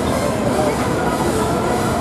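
A Moonen Energizer pendulum ride running at full swing, heard as a steady, loud, dense din of ride machinery and fairground noise, with no clear music or voices on top.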